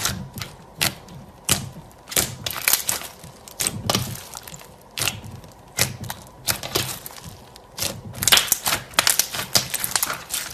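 Green fluffy slime studded with small foam beads being poked, pressed and stretched by hand. It makes irregular sharp clicks and crackles, with a denser, louder run of them about eight seconds in.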